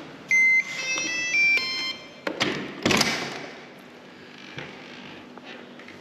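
Electronic hotel-room door lock playing a short beeping tune of several notes as it unlocks, then two clacks of the handle and latch as the door opens.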